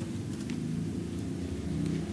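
A steady low hum, with a few faint light rustles of paper or cardboard being handled.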